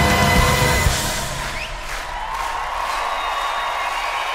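Live pop band music with a heavy beat that drops out about a second in, leaving a single held note over crowd noise.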